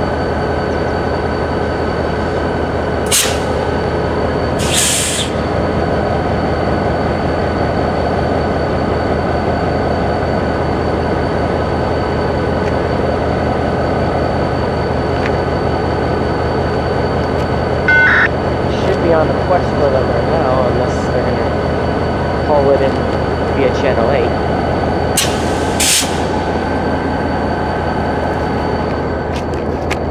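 Diesel freight locomotives idling at a standstill with their engines running loud and steady. Short hisses cut in about three and five seconds in and twice more near the end.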